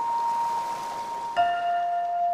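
Music: a held chime-like note over a soft hiss, then a lower bell-like note struck about a second and a half in, ringing on with bright overtones.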